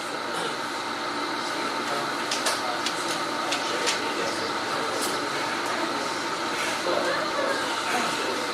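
Steady classroom room noise heard through a lecture microphone, with faint voices in the background and a few small clicks.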